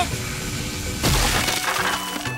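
Cartoon sound effect of a magic fire blast rushing at a wooden practice target, with a crash about a second in as it strikes, over background music.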